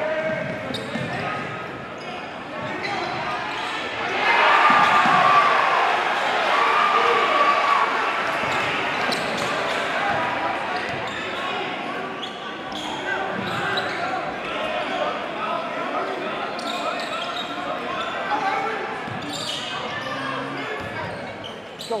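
Live basketball game sound in a large gym: a basketball bouncing on the hardwood court under the steady hubbub of crowd voices. The crowd voices swell about four seconds in.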